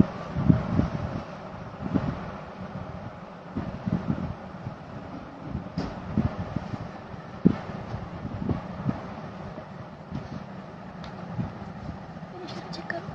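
Cloth rustling and close handling noise as a folded embroidered shirt is unfolded and moved about near the phone's microphone: irregular soft thumps and rustles over a steady background hiss.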